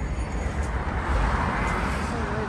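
Steady road traffic noise, swelling a little in the middle, with wind rumbling on the microphone.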